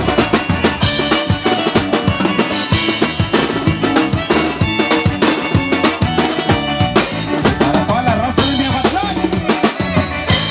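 Live band music played over PA speakers: electronic keyboards over a busy, steady drum beat, with splashes of cymbal a few times.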